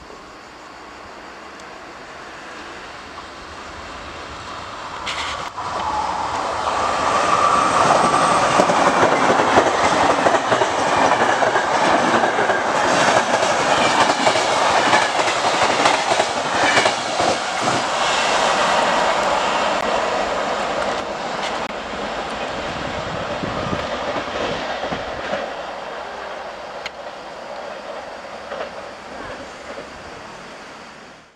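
Regional passenger train of coaches running through the station without stopping. Its rumble builds over the first few seconds, then the wheels clatter over the rail joints with repeated sharp clicks for about twenty seconds as the coaches pass, and the sound eases off near the end.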